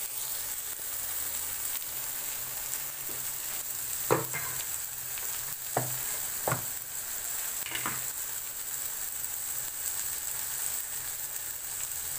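Chopped vegetables sizzling in hot oil in a kadai, a steady high hiss, while a steel spatula stirs them. The spatula knocks or scrapes against the pan a few times, about 4, 6, 6.5 and 8 seconds in.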